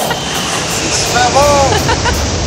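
Motorboat running on open water with steady wind and engine noise. A person's voice calls out once, briefly, about a second and a half in.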